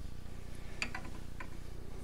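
Faint handling noise of a dreadnought acoustic guitar being moved in its hard case: a few light clicks and taps about a second in, over a low steady hum.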